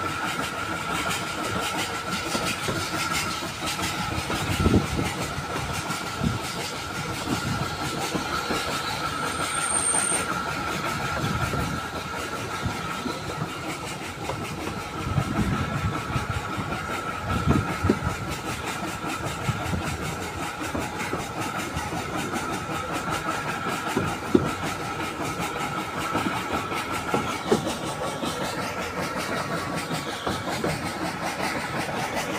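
Steam-hauled 762 mm narrow gauge passenger train running along the line, heard from a carriage: steady running noise with a constant high tone, and occasional low knocks of the wheels at uneven intervals.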